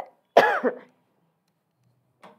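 A woman coughing twice: a short cough, then a louder, voiced one about half a second in.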